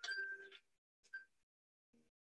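Faint ringing tones: a short ring at the start and a brief clink about a second in.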